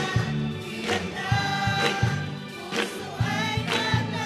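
Choir singing a Tagalog gospel song, backed by a live band with strummed electric guitar and drum hits.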